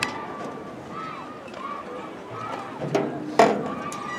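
Distant voices of players and coaches calling out across an outdoor football field, with a loud, sharp sound about three and a half seconds in.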